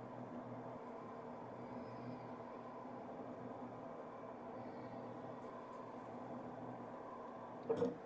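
Faint steady hum of an egg-painting CNC machine's servo motors as it turns the egg and moves the marker arm, with a short louder sound near the end.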